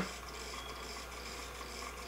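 Faint steady hum of the small electric motor driving the turntable, spinning at a constant speed.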